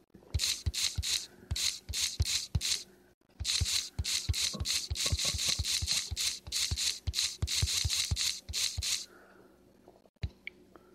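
A rapid run of short, scratchy noise bursts, about three or four a second, each with a low thump. They break off briefly about three seconds in and stop about a second before the end.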